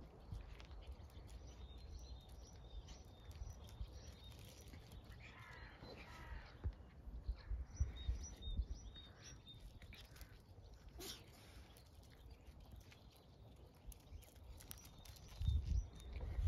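Faint birds calling outdoors: runs of short, high, repeated chirps, and a harsher call like a crow's caw about six seconds in, over a low steady rumble.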